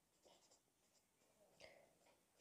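Near silence with faint strokes of a felt-tip marker writing letters, one stroke a little louder near the end.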